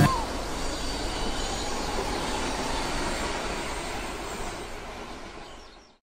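A steady rushing noise with no clear pitch, fading out slowly to silence by the end.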